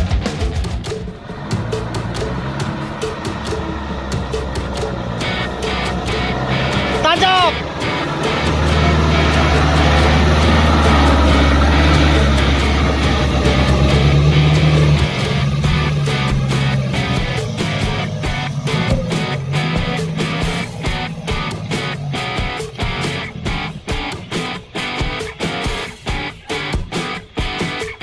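Rock music with guitar plays over a dump truck's diesel engine, which runs loud and low for several seconds in the middle.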